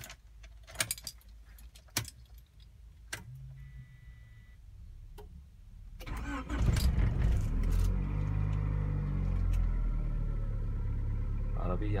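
Keys jangling and clicking at the ignition, then about six seconds in the starter cranks briefly and the 1997 Honda Accord's engine catches. It settles into a steady idle on a cold start, the car having sat unstarted for about a day.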